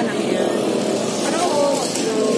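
Remote-control toy rock crawler's electric motor and gears whirring steadily as it drives up onto a ramp, with people chattering over it.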